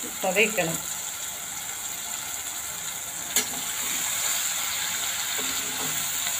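Ridge gourd and tomato pieces sizzling steadily in oil in a kadai, with one sharp click about halfway through.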